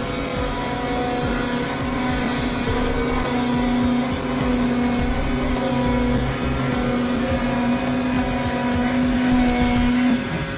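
Dekcel DEK-1625M cardboard cutting plotter running as its knife head cuts 6 mm cardboard: a steady machine hum with a whine in it, which cuts off at the very end.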